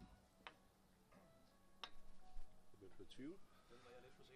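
Two light, sharp clicks about a second and a half apart as small billiard pins are stood back up by hand on the table, against an otherwise quiet room with faint voices.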